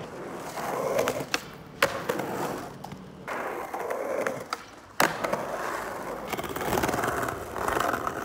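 Skateboard wheels rolling over rough asphalt, swelling and fading, with several sharp clacks of the board, the loudest about two seconds in and another at five seconds.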